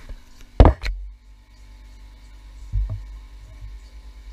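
Camera being handled and moved: a loud knock about half a second in, a lighter one just after, then low thumps near the three-second mark.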